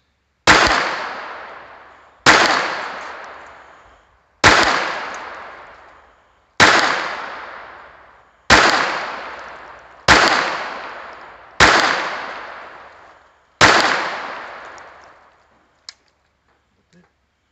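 Eight single shots from a Ruger LCP II .22 LR pocket pistol, spaced about two seconds apart, each a sharp crack with a long echoing tail. Near the end a faint click as a round fails to fire, taken for a light primer strike.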